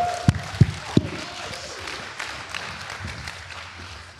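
Audience applause and cheering, with a few loud thumps in a steady beat in the first second, then the applause dies away.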